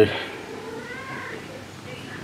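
Tabby cat giving one quiet meow, a short call that rises and falls about a second in.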